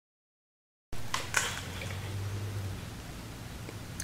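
About the first second is dead silence, then faint room noise with a few light clicks and a low steady hum that stops before the end.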